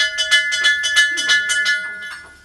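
A small brass puja hand bell (ghanti) rung continuously, about seven strokes a second, its ringing tone held throughout and fading near the end.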